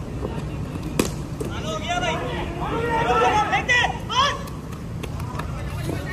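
A single sharp knock about a second in, then several people calling out loudly for a couple of seconds, over a steady low hum.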